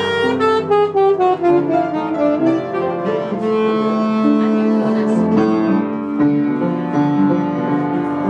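Tenor saxophone and upright piano playing together live. The saxophone runs down in a quick falling line over the first two seconds or so, then holds longer notes over the piano.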